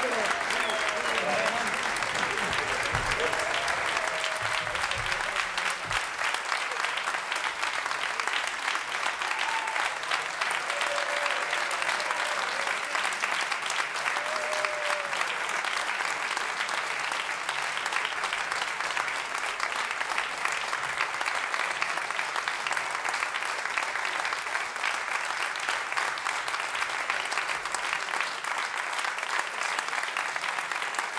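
Audience applauding steadily in a theatre at the close of a concert.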